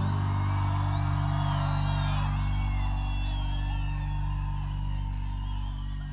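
A live pop band holding the final chord of a song: low sustained notes ring on steadily without singing. High gliding whoops from the audience sound over it.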